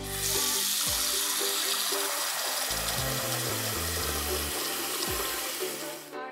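Water running steadily from a sink tap, starting suddenly and cutting off just before the end, with children's music playing underneath.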